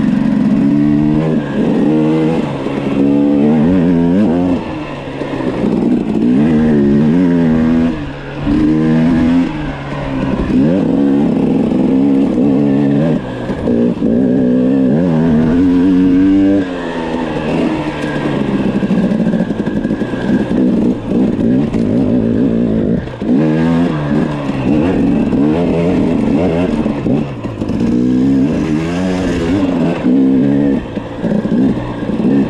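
KTM dirt bike engine revving up and easing off over and over, rising and falling in pitch every second or two, with a few brief drops in power. The bike is being ridden with no working clutch.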